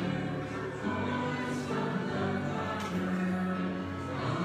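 A congregation singing a hymn together with accompaniment, in long held chords that move to new notes about every second or two.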